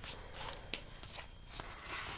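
Faint rustling of a picture book's paper pages as a page is turned, in about four short brushes.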